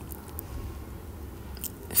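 A few faint, short clicks over a low, steady background hum.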